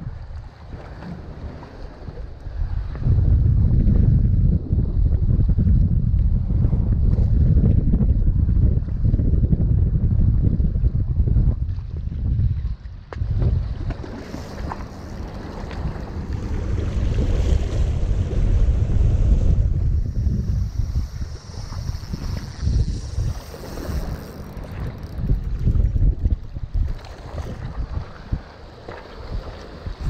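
Wind buffeting the microphone: a low rumble that swells and fades, loudest through the middle, with water lapping against the rocky shore beneath it.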